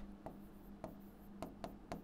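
Marker pen writing on a whiteboard: a run of faint, short strokes and taps as characters are written.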